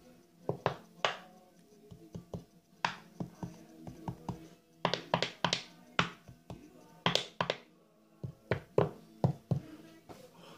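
An irregular run of sharp taps and clicks from glass preserving jars and their metal lids being handled, over faint steady background music.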